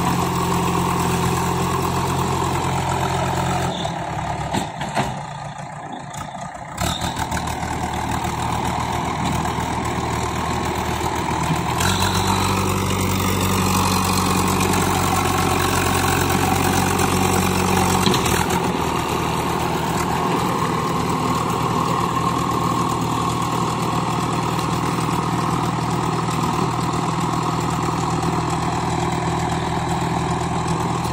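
JCB 3DX backhoe loader's diesel engine running steadily as the front bucket pushes and lifts soil. The engine sound drops away briefly about four seconds in. It runs louder for about six seconds from twelve seconds in, as a full bucket of soil is raised.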